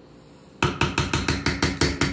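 A quick run of about ten sharp knocks, around seven a second, beginning a little over half a second in.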